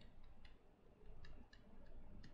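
Near silence with faint, irregular light ticks of a stylus tapping on a tablet screen as figures are written.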